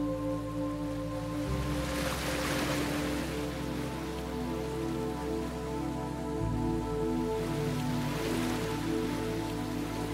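Slow ambient meditation music, sustained synth drones whose bass note changes twice, over a soft hiss of surf that swells and fades twice.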